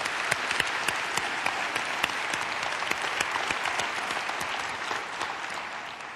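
Audience applauding: a dense patter of many hands clapping that tapers off near the end.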